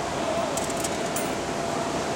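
A few light metallic clicks about half a second to a second in, a coin going into a coin-operated machine's slot, over a steady hum.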